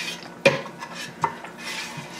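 Metal spoon scraping and clinking against the inside of a stainless steel pot as it scoops out the last of a thick white sauce, with two sharper clinks about half a second and just over a second in.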